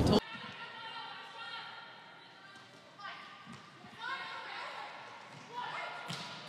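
Indoor volleyball court sounds: a loud thud right at the start, then players calling out and shoes squeaking on the court, with a few sharper hits near the middle and end.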